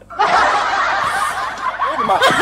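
Laughter, starting about a quarter second in after a brief pause and going on without break.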